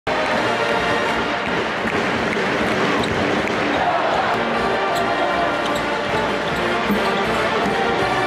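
Basketballs bouncing on a hardwood court, dribbled and shot, echoing in a large arena, with music playing throughout.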